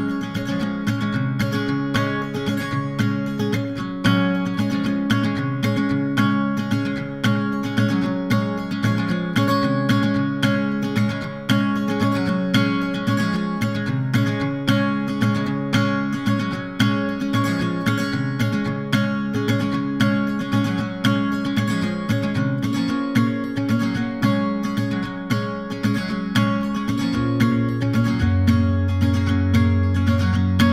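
Background music: a strummed acoustic guitar playing a steady rhythm with no singing, and a low bass note coming in near the end.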